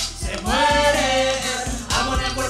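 Live urban-pop music: female vocals over a backing beat with bass, with one long sung note rising in about half a second in and held for about a second.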